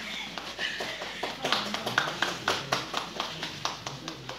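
Shoes stepping and tapping on a wooden floor: a quick, irregular run of sharp taps, densest in the middle, with a few brief voices.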